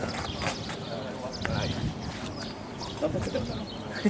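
Indistinct talking in the background, with a few light clicks.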